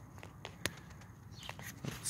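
Quiet engine-bay room tone with a few light clicks and taps, the sharpest about two-thirds of a second in.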